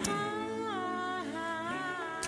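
A long hummed note, held steady, that drops to a lower pitch about halfway through and holds there.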